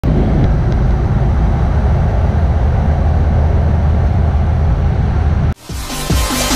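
Steady low rumble and rushing noise of a motorboat running under way: engine hum with wind and water noise. It cuts off abruptly about five and a half seconds in, when electronic music with a beat starts.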